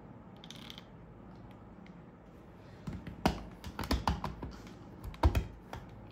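Sharp plastic clicks and knocks as a hand blender's motor unit is handled and pressed onto its attachment. There is a run of clicks about three seconds in and another pair of louder knocks a little after five seconds.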